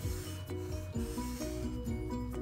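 Black felt-tip marker rubbing on a large paper pad as lines are drawn, a few short strokes, over quiet background music.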